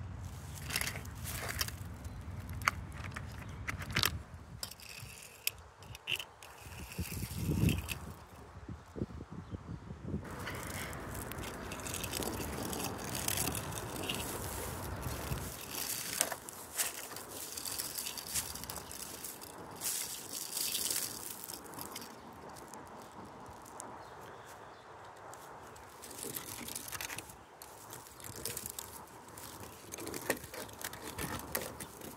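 Scattered clicks, rattles and scrapes of a plastic Hot Wheels launcher and die-cast toy cars being handled and rolled along weathered wood.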